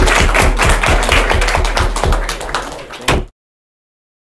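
Audience applauding in a small room, with steady, regular claps close to the microphone. The applause eases slightly, then cuts off abruptly about three seconds in.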